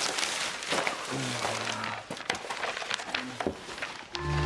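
Paper rustling and crackling as loose sheets and folders are flipped through and shuffled by hand, with a short voiced murmur about a second in.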